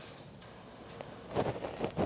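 A few short puffs of breath blown through a small inline propane filter, about one and a half seconds in. The filter element restricts the flow, making it hard to blow through. Light handling clicks come with the puffs.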